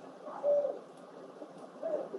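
A bird's short, low cooing call about half a second in, with a weaker one near the end, over a steady background hiss.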